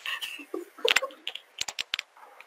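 A quick run of sharp clicks, about half a dozen in the second second, typical of a computer mouse clicking to advance a photo viewer, after a short grunted 'eung' from a man.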